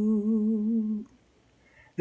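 A man's unaccompanied singing voice holds the last note of a hymn line, steady with a slight vibrato. It stops about halfway through and leaves a short near-silent pause.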